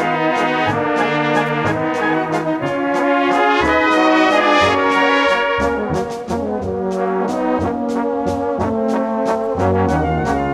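Live brass band music: clarinets, trumpets and flugelhorns, tenor horns, trombones, tubas and drums playing together. Tuba bass notes move under the melody to a steady beat.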